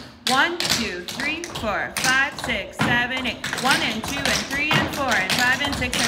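Metal-plated tap shoes clicking on a wooden studio floor as a group of dancers taps in rhythm, with a voice counting the beat over the taps.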